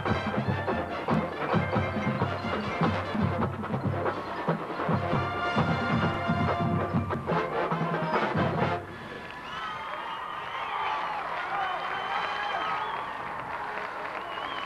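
Marching band of brass and drums playing with heavy, rhythmic bass drum hits, stopping abruptly about nine seconds in at the end of a musical passage. The crowd in the stands then cheers and whistles.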